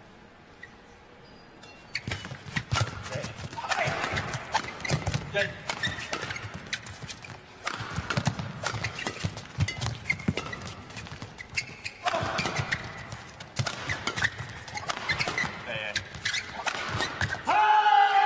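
Badminton rally: the shuttlecock is hit back and forth with sharp racket strikes and quick footwork on the court, under a crowd that shouts and cheers in swells. Near the end the crowd noise jumps suddenly to loud cheering as the winning smash ends the match.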